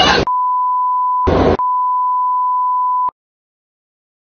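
A steady single-pitch censor bleep lasting about three seconds. About a second in, a short snatch of the noisy original audio breaks through, and then the bleep cuts off abruptly into dead silence.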